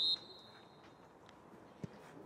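Referee's whistle: one short, high blast right at the start, fading to a faint tail over the next second, blown to stop play for a free kick.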